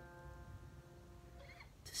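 A strummed chord on a small acoustic travel guitar ringing on and slowly fading, with a faint intake of breath about one and a half seconds in and a sung "s" right at the end.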